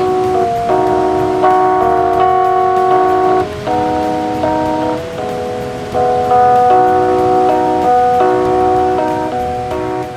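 Music played from a phone through a hot-pink WOWee portable speaker: a tune of held chords that change every second or so, loud and steady.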